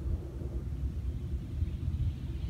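Steady, muffled low rumble heard inside a truck's cab during a touchless automatic car wash cycle.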